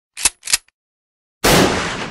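Two sharp clicks, then about a second and a half in a single loud shotgun blast whose noise trails off slowly.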